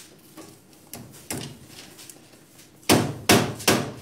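Three sharp knocks about 0.4 s apart near the end, like hammer blows, from work on a broom head being bound on a broom-winding machine, after a few faint clicks.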